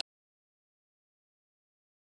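Complete silence: the sound track is cut to nothing.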